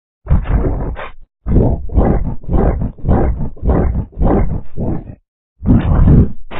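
Loud, deep, distorted roaring in a run of short bursts, about two a second, with a brief break near the end before it starts again.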